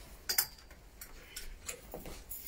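Light clicks and taps of clothes hangers being handled on a rail, with one sharper clack about a third of a second in and a few fainter ticks after it.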